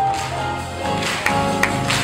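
Band accompaniment of an old Shanghai pop song: sustained chords with a few sharp percussive hits from about a second in.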